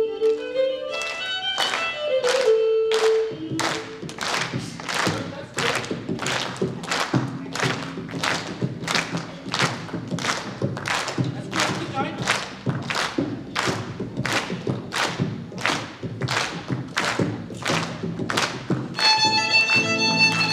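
Audience clapping in time, about two claps a second, over music. Near the end a violin takes up the melody.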